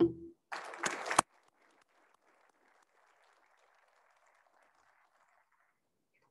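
A short burst of audience applause cut off abruptly about a second in, followed by only faint clapping that dies away near the end.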